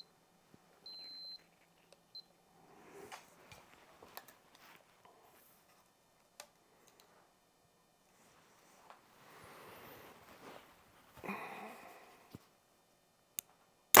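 A digital vibration meter gives a short, high beep about a second in. Soft handling and rustling follow as a compound bow is drawn, with a brief louder burst of noise near the end.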